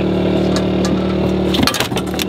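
A motor on the bowfishing boat running steadily, a low, even drone with several steady tones.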